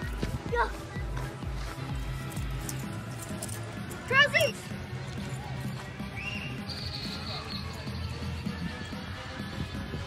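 Background music with a steady bass beat. About four seconds in comes one short, loud, high-pitched cry.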